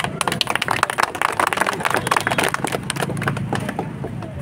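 A small crowd clapping by hand, a fast, dense run of claps that thins out near the end.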